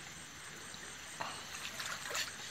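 Faint trickle of a shallow creek flowing steadily, with a few light clicks in the second half.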